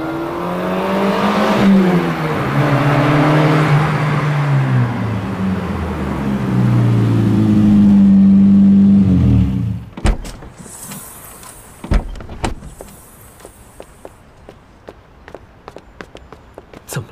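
An orange McLaren's twin-turbo V8 runs as the car drives up and slows to a stop, its note rising and falling, then cuts off about nine and a half seconds in. The dihedral doors then open with a thud about ten seconds in, a brief hiss, and a second thud about two seconds later, followed by light clicks.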